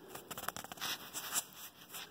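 Soft scratchy handling sounds with a few small clicks, from hands working thread through a sewing machine's guides.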